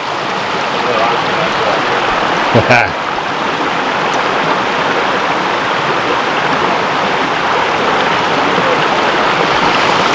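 Shallow rocky creek running over stones, a steady rush of water. A brief voice cuts in about two and a half seconds in.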